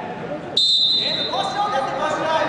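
A referee's whistle blown once, a steady high note of a little under a second starting about half a second in, signalling the wrestlers to start; shouting voices follow it.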